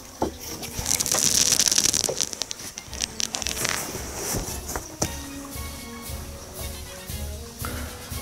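Large cardboard guitar shipping box being handled and shifted on a table: a burst of rustling and scraping cardboard about a second in, then quieter scattered knocks and rubs.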